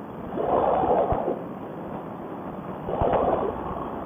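Muffled wind and paramotor noise picked up in flight by a helmet intercom microphone, swelling louder twice.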